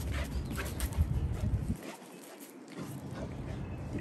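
A Rottweiler at play, heard as a run of short, noisy breaths and scuffles without barking, over a low rumble on the microphone. The rumble drops away for about a second in the middle.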